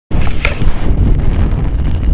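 Wind buffeting the microphone of a head-mounted action camera: a loud, uneven low rumble, with a brief sharp knock about half a second in.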